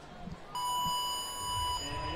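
Electronic start beep: one steady high tone lasting about a second, signalling the start of the heat.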